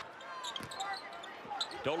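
Basketball game sounds in an arena: a ball being dribbled on the hardwood court, with the crowd murmuring.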